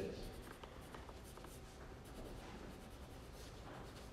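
Faint rustling of paper pages being turned and handled, with light scattered ticks and rubs.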